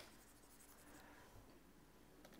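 A sharp tap of a stylus on a pen tablet at the very start, then faint scratching of the stylus as it writes; otherwise near silence.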